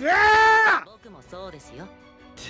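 A man's loud, drawn-out, high-pitched shout of excitement lasting under a second, its pitch rising, holding, then dropping off. Quieter music follows.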